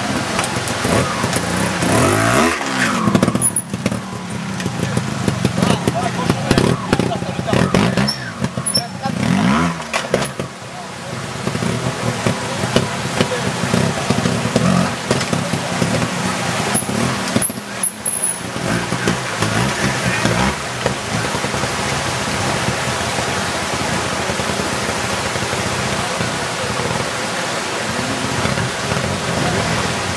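Trials motorcycle engine revving in short throttle bursts whose pitch rises and falls, clearest about two and eight seconds in, over a steady rush of noise.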